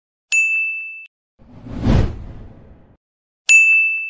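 Logo-animation sound effects: a bright bell-like ding that rings and dies away, then a whoosh that swells and fades, then a second ding near the end.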